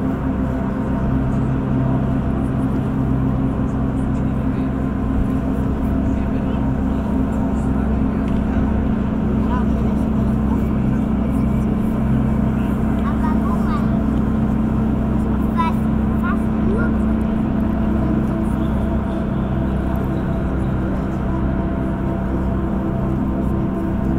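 Sustained low ambient music drone with steady deep tones, under an indistinct murmur of voices.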